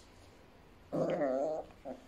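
A Biewer Yorkie puppy gives one wavering, high-pitched play growl lasting under a second, about a second in, while tugging at its rope toy. A shorter, quieter sound follows near the end.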